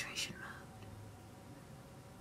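A woman's soft, breathy voice trailing off at the very start, then near silence: faint room tone with a low steady hum.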